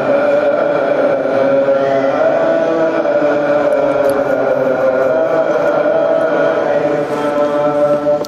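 Coptic liturgical chant: slow, melismatic singing on long held notes that bend gradually in pitch.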